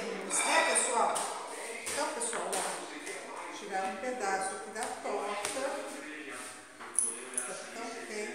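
A woman talking, with a single sharp metallic click about seven seconds in as a utensil strikes the metal baking tray while cutting a freshly baked pie.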